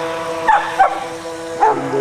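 A cavoodle barking excitedly, four sharp barks, over the steady whine of a radio-controlled boat's motor.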